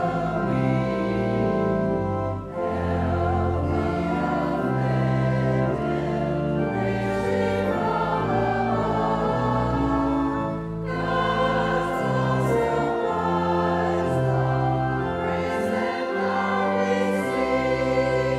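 Congregation and choir singing a hymn together over held organ chords, with short breaks between phrases about two and a half seconds in and again around eleven seconds.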